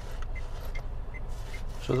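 Car idling in traffic, heard from inside the cabin: a steady low rumble, with faint, even ticking about two to three times a second.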